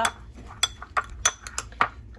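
Metal spoon clinking against a ceramic bowl while stirring chopped eggplant in dressing, a handful of separate sharp clinks.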